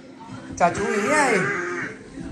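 A toddler's drawn-out vocal sound, a bit over a second long, its pitch rising and then falling.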